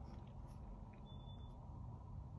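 Quiet room tone with a few faint soft rustles of hands on the paper pages of an open comic book, and a brief faint high beep about a second in.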